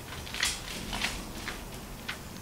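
Hardware cloth (wire mesh) being bent up against a wooden block by gloved hands: a sharp rattle of the wire about half a second in, then a few softer clicks.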